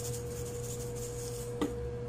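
Salt shaker shaken lightly over a taco, then set down with a single sharp click about one and a half seconds in, over a steady background hum.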